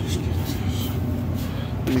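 Steady low machine hum from running furnace equipment, with light rustling from handling near the equipment.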